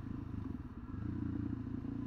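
Suzuki DRZ400SM's single-cylinder four-stroke engine running steadily at road speed through its stock exhaust, a low pulsing note mixed with wind rush on a helmet-mounted camera. The note dips slightly just before a second in, then holds steady.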